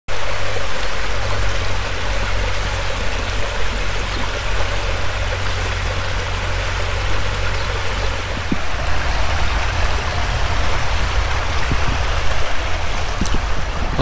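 Small stream flowing steadily through the arches of a stone bridge: a constant, even sound of running water.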